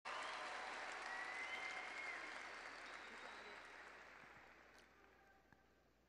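Large audience applauding, with a few voices calling out, the applause fading away steadily over the seconds.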